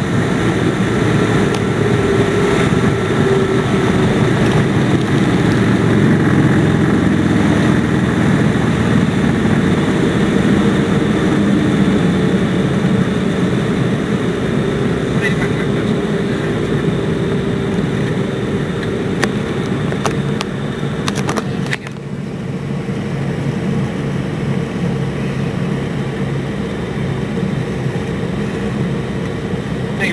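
Cockpit noise of a Piper PA-31 Navajo Chieftain's twin piston engines and propellers during the landing roll-out, a steady heavy hum that gradually eases. About twenty seconds in there is a short cluster of clicks, after which the engine sound drops and settles into a quieter, steadier low hum as the aircraft slows.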